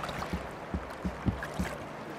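Steady low hum of a fishing boat's motor, with water moving against the hull and a few soft low knocks.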